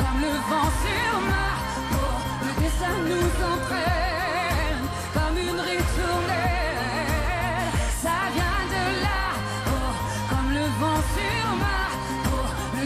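A female singer sings a French pop ballad with wide vibrato and full-voiced held notes. She is backed by a band with a steady pulsing bass.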